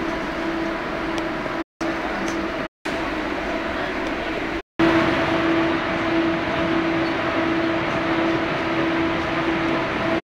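Steady interior noise of a KLIA Ekspres airport train carriage under way: an even rumble and hiss with a constant hum, louder from about five seconds in. The sound drops out briefly three times.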